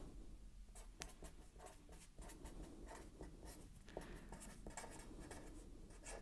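Pen writing on paper: faint, irregular scratching strokes and light taps of the pen tip as a line of formula is written out by hand.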